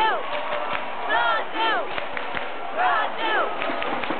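Crowd of football fans chanting and shouting, with pairs of loud rising-and-falling calls about every second and a half over a steady crowd din.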